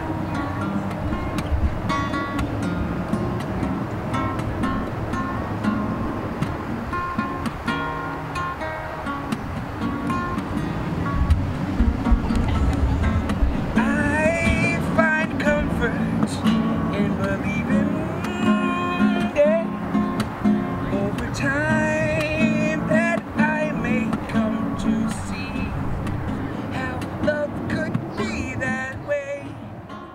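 Acoustic guitar strummed in a live instrumental passage, with a pitched melody line wavering above the chords from about halfway through. The music begins to fade out at the very end.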